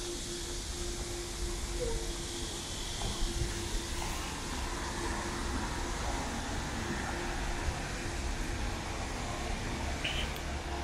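Outdoor city street ambience: a steady low rumble and hiss of distant traffic, with a faint steady hum.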